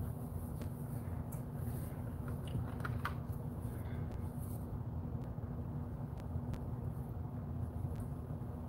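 Steady low background hum of room noise with a few faint light clicks and taps, most of them bunched about two to three seconds in.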